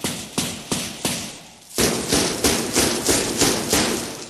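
Percussion beat opening a piece of folk-style music: sharp, evenly spaced strikes about three a second, growing louder with a dense hissing layer over them from about two seconds in.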